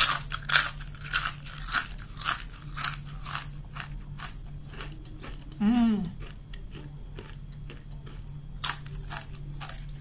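Potato chip bitten and chewed close to the microphone: sharp, loud crunches about twice a second at first, fading to softer chewing, then crunching again near the end.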